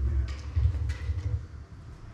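Low, rumbling thuds and a few short rustles of handling close to a podium microphone, as if things are gathered up on the lectern. They fade out about one and a half seconds in.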